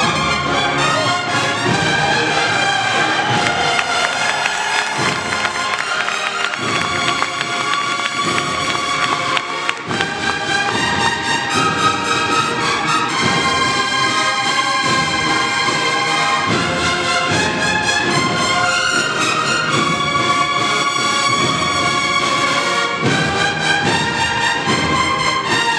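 A massed Spanish cornet-and-drum band (banda de cornetas y tambores) playing a processional march: the bugles carry the melody in long held notes over a steady drum beat.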